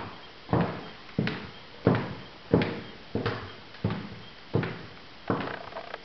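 Footsteps on a wooden floor, an even walking pace of about one and a half steps a second.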